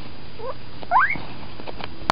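Guinea pig squeaking twice, two short squeaks rising sharply in pitch about half a second apart.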